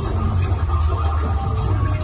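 Loud pop concert music through an arena sound system, with a heavy booming bass and a steady beat.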